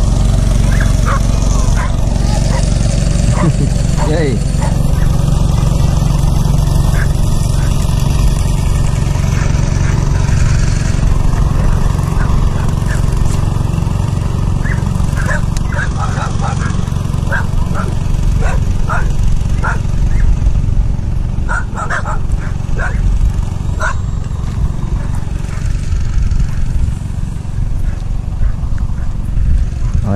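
Dogs barking repeatedly over a loud, steady low rumble.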